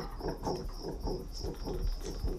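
Steady, high, insect-like chirping with a quick, even pulse beneath it, part of the film's background ambience.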